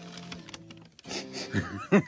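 A paper bag rustling and crinkling as a bun is pulled from it, under a steady low hum, with voices starting to laugh near the end.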